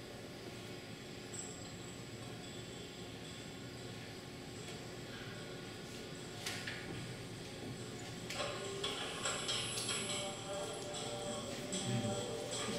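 Film soundtrack played over a hall's loudspeakers and picked up by the room, quiet at first with only a faint steady hum. About two-thirds of the way in, soft music and voices come in and the sound grows busier.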